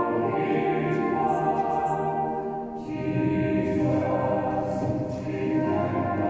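Church choir singing, holding long notes, with a short break between phrases about three seconds in.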